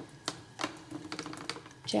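Light, irregular clicks and ticks from the hand-cranked screw ram of a side-bending jig being turned slowly, pressing a heated wooden ukulele side into the tight cutaway curve.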